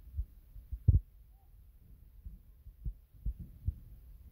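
Irregular dull, low thumps, about seven in four seconds, the loudest about a second in, over a faint low rumble.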